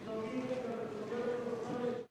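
Indistinct murmur of many voices in a large, echoing assembly hall, a continuous hubbub with no single clear speaker. It cuts off suddenly at the end.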